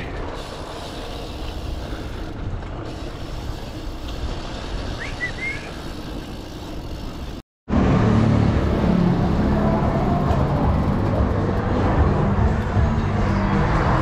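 A BMX bike rolling along paved sidewalk, with street traffic making a steady rush of noise. After an abrupt cut, louder restaurant room noise with a low steady hum.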